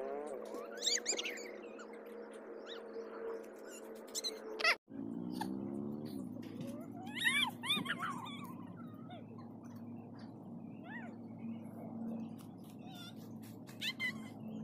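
Cat-like meowing calls, short rising-and-falling cries heard over a steady hum. There is a sudden break about five seconds in, after which the hum comes back lower in pitch.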